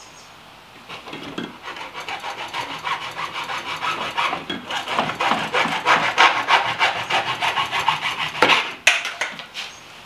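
Hacksaw cutting through a rib of corrugated plastic pool drain tube in rapid back-and-forth strokes, starting about a second in. The sawing stops near the end with a sharp knock.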